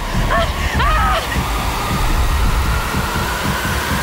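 Film trailer sound design: a loud, dense low rumble with a throbbing pulse, with a steady high tone held over it from about a second and a half in. Brief voice sounds come through during the first second or so.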